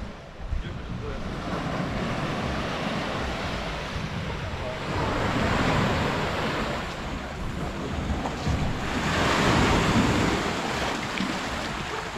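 Small sea waves washing in over sand and rocks at the water's edge, a continuous surf wash that swells twice, around the middle and again later on, with wind buffeting the microphone.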